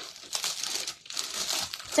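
Plastic garment packaging crinkling as it is handled, an irregular crackle that stops briefly about halfway through.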